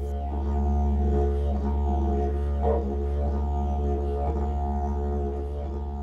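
Background music: a didgeridoo playing one steady low drone, its overtones shifting slightly as it goes.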